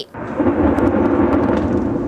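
Distant airstrike explosion: a low rumbling roar that builds over the first half-second, rolls on steadily for about two seconds, then cuts off.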